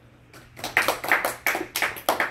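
A small group of people clapping, starting about half a second in.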